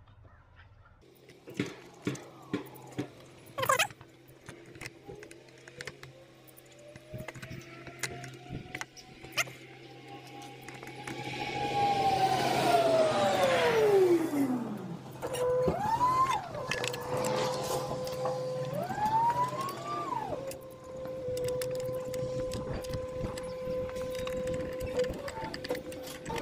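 A vehicle passes on the road: its engine pitch climbs slowly, it is loudest with tyre noise midway, then the pitch drops steeply as it goes by. After that a steady hum runs on, twice rising briefly in pitch. There are a few light clicks of pliers on the motorcycle's windshield grommets near the start.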